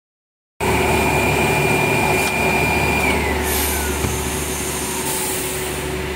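Air bubble film coreless rewinder machine running: a steady mechanical hum with a high electric whine that holds, then glides down in pitch over the second half.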